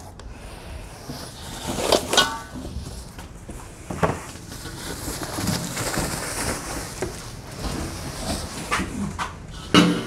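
Plastic wrap and cardboard packaging rustling as parts are handled and lifted out of a shipping box, with a few knocks and a louder clunk near the end.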